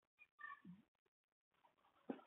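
Near silence: room tone with a faint, brief pitched sound about half a second in.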